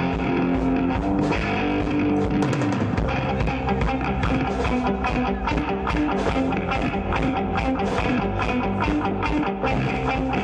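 Live rock band playing through a stage PA: electric guitars over a drum kit keeping a steady beat, with no singing.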